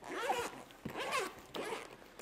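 Zipper of a semi-rigid EEG headset carrying case being pulled open, in three short runs as it goes around the case.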